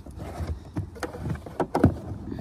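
Plastic clicks and knocks from hands working a wiring connector and the boot's side trim panel, with the loudest knock near the end.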